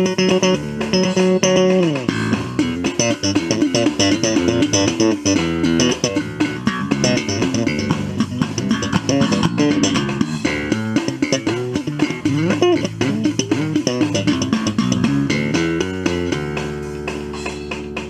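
Electric bass guitar playing a busy line of plucked notes in an instrumental stretch of a song, with no singing.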